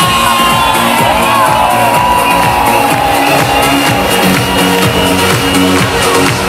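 Live electronic synth-pop music played loud over a PA, with a steady beat and held synth notes. A crowd cheers over it.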